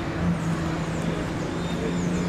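A steady low engine hum, with faint voices.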